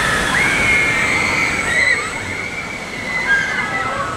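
Intamin tire-propelled launched roller coaster train running along the track, a steady rushing noise with a few drawn-out high whine-like tones over it.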